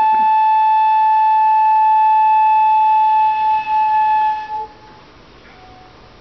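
Shinobue (Japanese bamboo transverse flute) holding one long steady note that stops about four and a half seconds in, followed by a short pause with only a faint, brief lower note.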